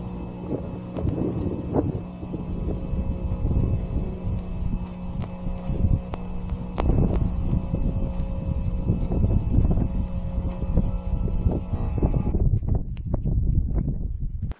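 Wind buffeting the microphone in gusts, an uneven low rumble, over a steady instrumental music track with held notes. Near the end the upper hiss drops away.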